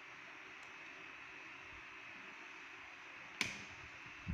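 Faint steady hiss, then a single sharp click about three and a half seconds in: the trainer kit's power rocker switch being pressed on.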